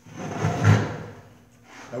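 A scraping knock on a plywood sheet as a circular saw and clamp are handled on it. It lasts about a second and is loudest a little after half a second in.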